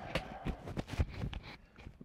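Hands patting and feeling over a shirt: soft cloth rustling with irregular light knocks, the strongest about a second in.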